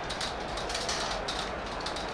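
Glass marbles rolling along a plastic race track: a steady rattling rumble made of many fine clicks.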